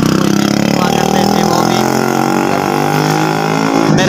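A motor vehicle's engine passing on the road, its pitch falling in the first second as it goes by and then running fairly steady.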